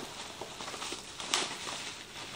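Rustling of an insulated fabric lunch bag and the plastic wrapping around the lunch box inside as they are handled and pulled open, with one louder crinkle a little past halfway.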